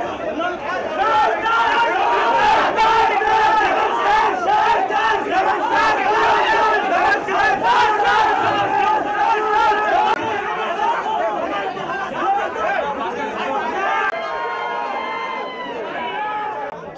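A packed crowd of fans shouting and calling all at once, many voices overlapping, with sharp short cracks among them in the first half. Near the end the shouting eases and one high note is held for about two seconds.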